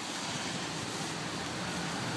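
2004 Chevrolet Epica's six-cylinder engine idling, heard as a faint steady hum under an even hiss of wet outdoor noise.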